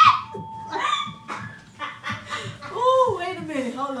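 Women's voices making nervous vocal sounds and some laughter, with a drawn-out vocal sound falling in pitch near the end.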